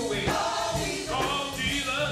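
Live gospel group singing together in harmony into microphones, backed by drums keeping a steady beat.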